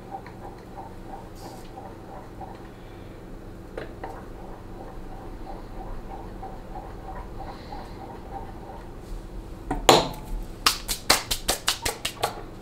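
Faint steady hum with light regular ticking, then near the end a sharp clink followed by a quick run of clinks: a utensil rattling against a glass cup, as when stirring melted soft-bait plastic.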